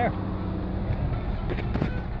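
Steady engine and road noise heard inside a moving car's cabin, with a few brief rubbing knocks from a phone being handled about a second and a half in.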